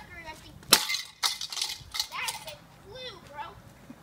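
A thrown rock strikes a metal globe piggy bank with one sharp clang a little under a second in, followed by a few rattling, scraping sounds and short shouts.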